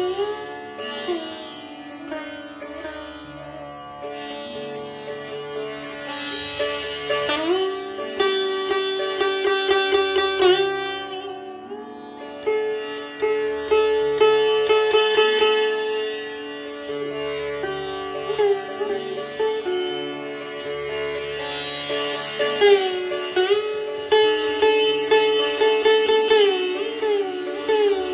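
Sitar playing a slow, unaccompanied alaap in Raag Bhatiyar: single plucked notes held and bent into sliding glides (meend) that rise and fall between pitches.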